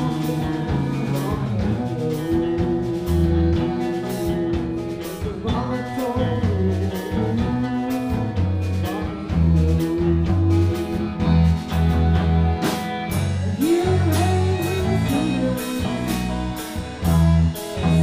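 Live rock band playing: accordion, electric guitar, electric bass and drum kit, over a steady drum beat.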